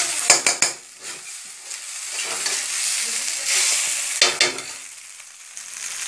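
Rice frying with a steady sizzle in a metal kadai while a spoon stirs it, with a few sharp scrapes and knocks of the spoon on the pan about half a second in and again just after four seconds.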